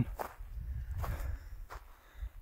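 A person's footsteps, with a few soft knocks, over a low rumble of wind on the phone microphone.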